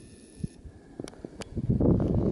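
A few light knocks, then from about one and a half seconds in, wind rumbling on the microphone, loud and gusty.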